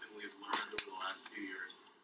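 Faint, indistinct talking in a room, with two sharp clinks about half a second and just under a second in.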